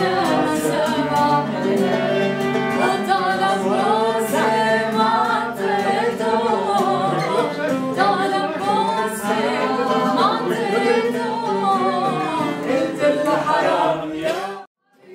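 Live singing accompanied by acoustic guitar and violin.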